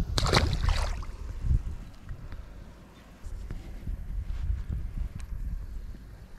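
A small largemouth bass splashing in shallow water as it is released, a short noisy splash in the first second. After it comes a low steady rumble with a few faint clicks.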